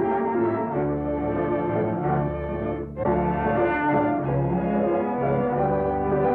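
Band music playing a dance tune, with held notes over a moving bass line and a short break about three seconds in.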